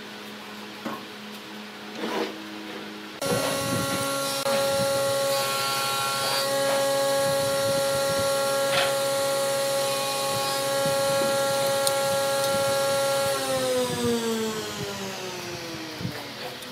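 Electric motor of a workshop power tool switching on suddenly a few seconds in and running with a steady whine. Near the end it is switched off and winds down, its pitch falling. A couple of knocks of wood being handled on the bench come before it starts.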